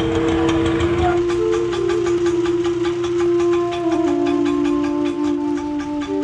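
Film background score: long held notes on a wind instrument, stepping slowly from pitch to pitch, over a steady quick beat. A low rumble underneath fades out about a second in.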